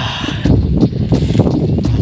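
Footsteps wading through mud and shallow water, a run of quick irregular steps.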